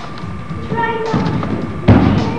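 A brief voice, then one loud thud near the end: a gymnast's feet landing on a balance beam.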